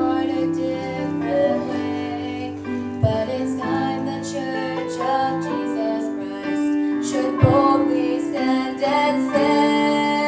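A young woman singing a gospel song solo into a handheld microphone over instrumental accompaniment, holding long notes. Two brief low thumps come about three and seven and a half seconds in.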